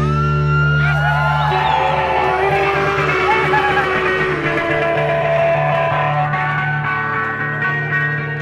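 Amplified electric guitars and bass left ringing in a loud, sustained drone at the end of a song, with feedback tones that slide in pitch over the held chord.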